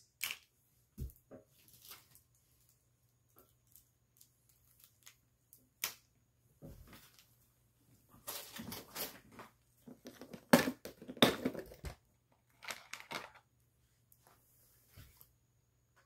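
Plastic action figures and packaging being rummaged through and handled in a plastic storage bin: a few scattered small clicks, then a busier stretch of rustling, crinkling and plastic knocks from just past the middle.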